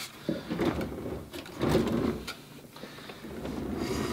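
A wooden steam-generator stand on casters being turned and rolled across a workbench: casters rolling and wood scraping on the benchtop in two stretches, with handling knocks.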